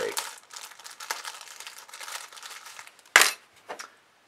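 Small clear plastic bag holding metal hardware crinkling and clinking as it is handled, then one sharp clack about three seconds in.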